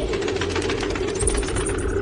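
Film sound design: a fast, mechanical-sounding rattle over a low sustained drone.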